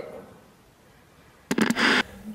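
Editing transition sound effect: after about a second of near silence, a quick crackle of sharp clicks about one and a half seconds in, followed by a short, loud hissing burst.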